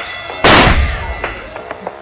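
A cartoon knockout punch sound effect: one sudden, loud, heavy hit with a deep boom about half a second in, ringing away over the next half second.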